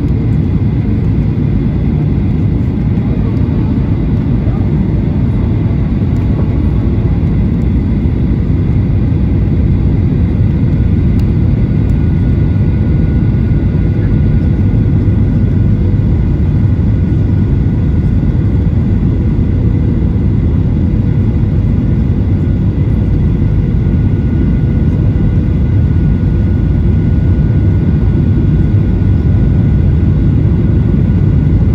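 Steady in-cabin roar of a Boeing 737-800 on approach with flaps extended: deep engine and airflow rumble from its CFM56-7B turbofans, with faint steady whining tones above it.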